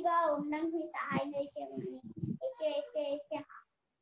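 A child singing a prayer in long held, sing-song phrases, heard through a video call, pausing briefly near the end.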